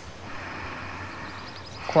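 Quiet, steady background ambience with a few faint, short high chirps of birds near the end. A woman's voice starts a spoken count right at the end.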